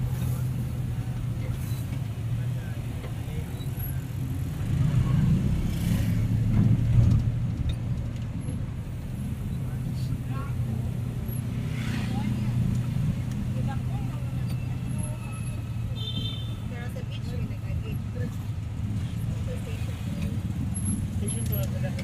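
Steady low hum of a vehicle running with road noise, heard from on board while riding slowly through street traffic. A short high-pitched tone about two-thirds of the way in.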